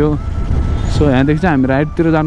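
A man talking, his voice breaking off briefly and resuming about a second in, over a steady low rumble.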